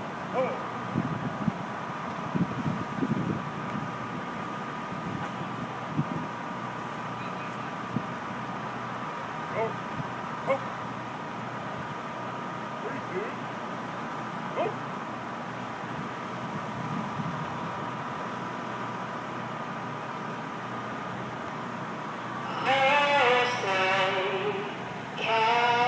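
A waiting crowd murmurs, with scattered voices and a steady high-pitched hum. Near the end a woman begins singing the national anthem through an amplified microphone.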